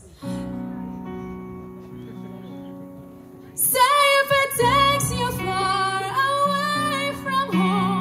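A held chord rings out and slowly fades. About three and a half seconds in, a woman's voice comes in over it, singing the slow chorus melody with vibrato.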